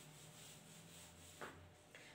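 Faint rubbing of chalk being wiped off a blackboard, with one brief slightly louder stroke about one and a half seconds in.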